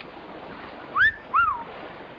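A person's short two-note whistle of surprise, the first note rising and the second rising then falling, over a steady background hiss.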